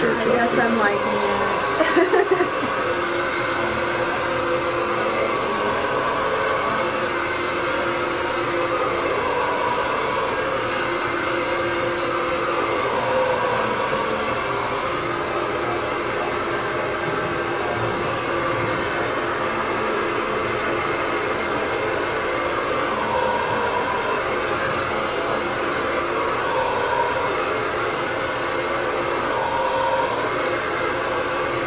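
Electric hair clippers running with a steady buzz as they shave the sides of a head down to the skin. There are a few brief louder bursts about two seconds in.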